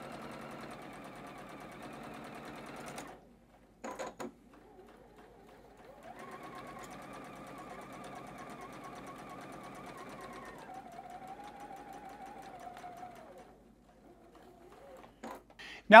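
Juki sewing machine stitching piping onto a quilt edge in two steady runs: a short one of about three seconds, then, after a brief blip and a pause, a longer run of about seven seconds whose hum drops in pitch partway through as it slows.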